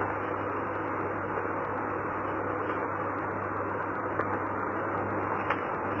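Steady hiss and low hum of an old recording's background noise, with a few faint ticks.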